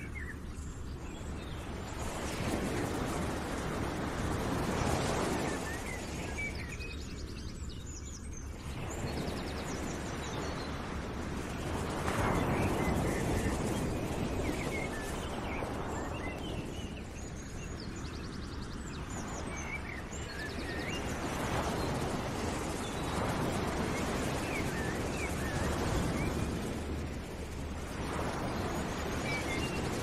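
Background nature ambience: small birds chirping over a rushing noise that swells and fades about every five seconds, with a steady low hum underneath.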